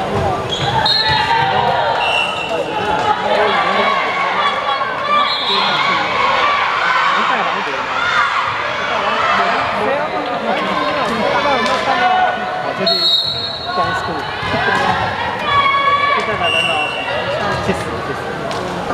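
Indoor volleyball rally: a volleyball being struck and hitting the court again and again, with players and spectators shouting and short high squeaks scattered through, echoing in a large sports hall.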